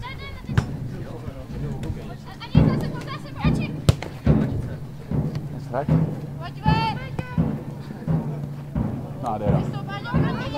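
Players' distant shouts across a football pitch, with a few sharp thuds of the ball being kicked, over a steady low hum.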